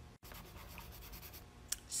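Coloured pencil scratching faintly on a paper worksheet in quick strokes, with a small click near the end.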